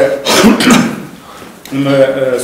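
A man clears his throat once, a short rough burst about a quarter of a second in that lasts just over half a second, in a pause between spoken phrases.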